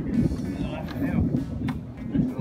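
Indistinct background talking from people nearby, with no clear words.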